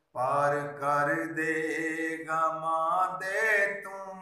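A man singing devotional Punjabi verse (a naat or Sufi kalaam) unaccompanied, in long, held, melismatic phrases. It starts just after a brief break for breath.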